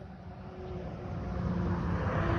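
Road vehicle noise, a steady hiss with low engine sound that grows gradually louder.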